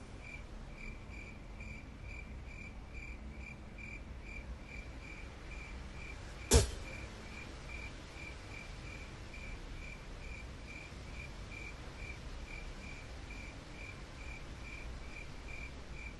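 A cricket chirping steadily, a little over two chirps a second, over faint low room noise. A single sharp click about six and a half seconds in is the loudest sound.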